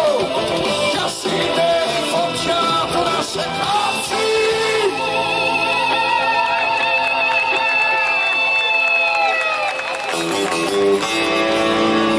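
Live rock band playing with a male singer and guitars, loud and steady. About five seconds in a long note is held and fades out shortly before ten seconds, then the band plays on.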